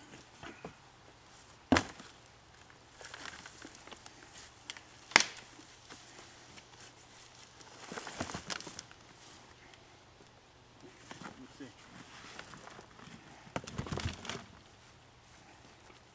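Soil and potato plants being tipped from a plastic tote into a plastic tub, heard as rustling, pouring soil, with two sharp knocks of the plastic containers in the first few seconds.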